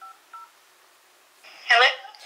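Smartphone dial-pad keypad tones: two short touch-tone beeps about a third of a second apart as a phone number is dialed, each a pair of pitches sounding together.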